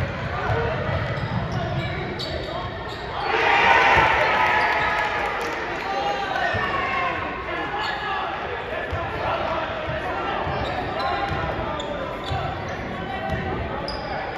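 A basketball being dribbled on a hardwood gym floor, echoing in a large hall, with voices of players and spectators around it. About three seconds in, several voices rise together in shouts, then fade over the next few seconds.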